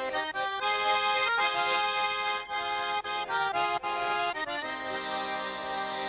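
Instrumental break in a Russian folk-style song: an accordion plays the melody in steady held notes and chords, with no singing.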